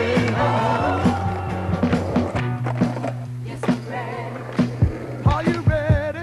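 Skateboard tricks on concrete: sharp clacks of the board popping and landing, several close together near the end, heard over background music with a steady bass line.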